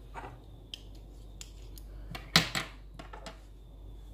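Two fountain pens being uncapped and handled: a few small clicks and taps of caps coming off and pens knocking together, the loudest just past halfway.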